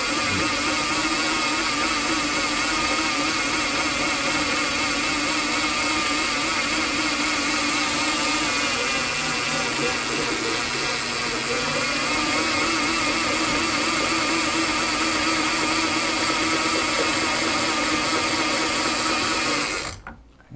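Triangle Sport HD140 electric line winder running steadily at speed, turning a big-game reel's handle to spool mono fishing line onto it, then shutting off abruptly at the end.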